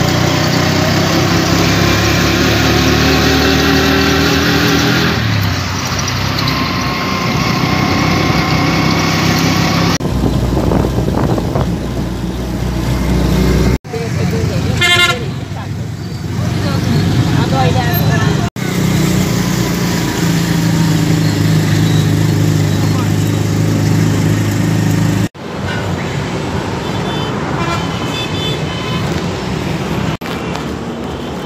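Engine of a motor rickshaw running as it rides through street traffic, with a horn tooting about halfway through. The sound breaks off abruptly a few times.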